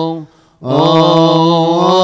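Coptic Orthodox liturgical chant sung by a male voice in long held notes that bend slowly in pitch. It breaks off for a short breath about a quarter second in and picks up again just after half a second.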